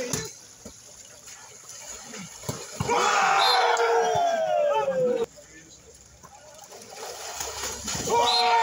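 Water splashing as players move in a pool, then a long, loud wordless shout from one voice lasting about two seconds, its pitch falling throughout, before it cuts off.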